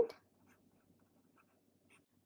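A thick black pen writing on paper, faint.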